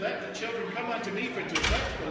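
Indistinct voices in a hall, with a single loud thump about one and a half seconds in.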